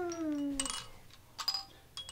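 A toddler's voice gliding down in pitch, then light clinks with short high ringing tones from a Weeble Wobble toy's chime as it is knocked and wobbles, about half a second and a second and a half in.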